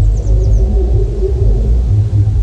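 Deep, heavy bass rumble of a cinematic trailer soundtrack, pulsing unevenly under a low droning middle layer, with a few faint high chirps about half a second in.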